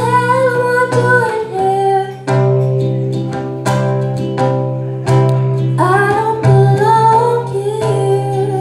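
A woman singing live to her own strummed small-bodied acoustic guitar. She holds sung notes near the start and again from about six seconds in, over chords strummed about every second and a half.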